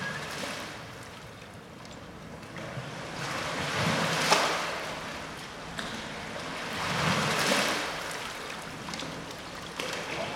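Rushing, splashing water that swells and fades in slow surges, roughly every three seconds, with no steady pitch.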